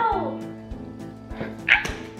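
Background music with steady held tones. A whine falls in pitch at the start, and a short high squeal comes about three-quarters of the way through.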